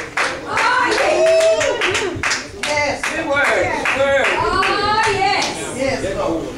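Church congregation clapping along, about four claps a second, with voices calling out in long, gliding cries over it.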